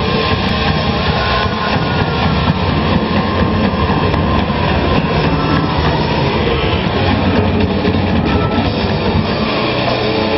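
Hard rock band playing live: distorted electric guitars, bass and drums merging into one dense, loud, rumbling wash with no breaks, as heard from the audience in a hall.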